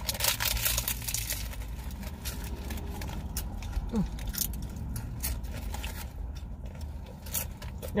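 Close-up eating sounds: a crunchy taco shell being bitten and chewed and paper food wrappers rustling, heard as a run of irregular small crackles and clicks. A steady low rumble runs underneath, and a short hummed 'mm' comes about halfway.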